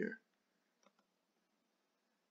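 Two quick, faint computer mouse clicks about a second in, clicking play on a video player.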